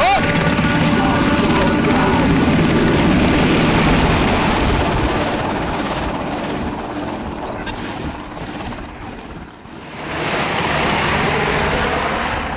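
Helicopter rotor and engine noise, loud and steady for the first several seconds, fading to a low point about ten seconds in, then rising again near the end.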